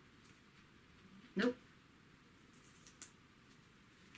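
Faint ticks and scratches of a fingernail picking at a paper price sticker on a plastic jar, against quiet room tone, with one short spoken word about a second in.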